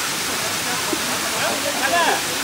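Waterfall cascading down a steep rock face: a steady rush of falling water, with people's voices breaking in near the end.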